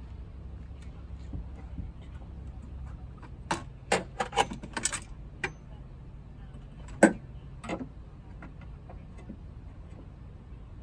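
Battery hold-down bracket being fitted over a car battery: a quick cluster of clicks and knocks a few seconds in, then one louder knock about seven seconds in and a lighter one just after.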